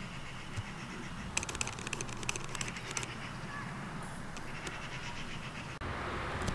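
Steady outdoor background noise, with a bird's rapid chattering call about a second and a half in, lasting over a second.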